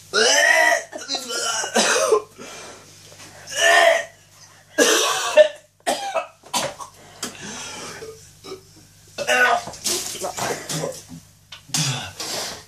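A man coughing and retching in repeated harsh bursts with short gaps between them: a gag reaction to swallowing a foul drinking-dare concoction that includes cat food.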